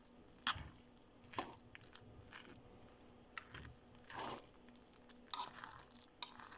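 A spoon scraping and scooping through cooked rice and peas in a metal pot, in irregular crunchy strokes, about five of them louder than the rest, over a faint steady hum.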